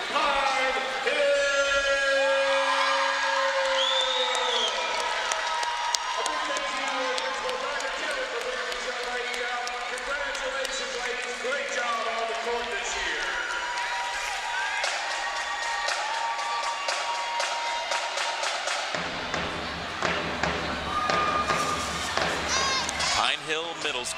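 Gymnasium crowd cheering and shouting, many voices at once, with clapping and sharp knocks through the second half.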